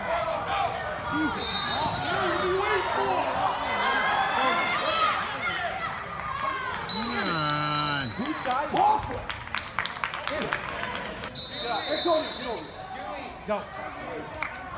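Referee's whistle blown once for about a second, about seven seconds in, with shorter whistle blasts near the start and about eleven seconds in, over shouting voices and a few knocks.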